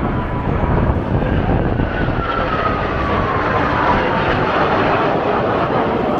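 Kawasaki T-4 jet trainers flying in formation, with a steady, loud jet engine noise. A whine within it falls in pitch through the middle as the jets pass.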